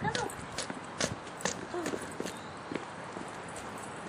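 Footsteps on a stone-paved garden path at a steady walking pace, about two sharp steps a second, with short bits of a woman's voice.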